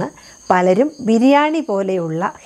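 A woman speaking, the loudest sound, over crickets trilling steadily and high-pitched in the background.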